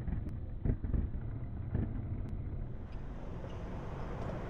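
Skateboard wheels rolling on concrete: a steady low rumble with a few sharp clacks from the board.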